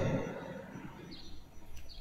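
Quiet church room tone in a pause between spoken phrases. Two faint short high chirps sound, one about a second in and one near the end.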